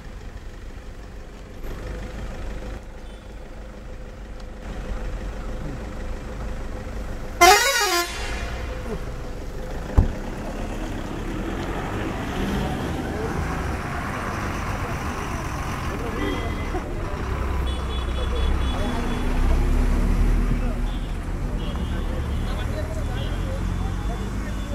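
An elephant trumpets once, a short, loud blast that bends in pitch about seven seconds in, over a steady low engine rumble and faint murmuring voices. A single sharp click follows a couple of seconds later.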